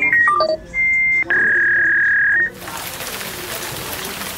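School intercom speaker: a quick run of short electronic notes stepping down in pitch, then two held beeps, the second lower and longer, followed by a loud steady hiss from the open speaker.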